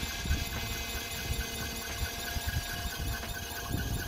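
Van engine idling after a cold start, a low rumble with a steady high-pitched whine over it: the weird noise it makes when started in the cold, which the owner suspects is the serpentine belt.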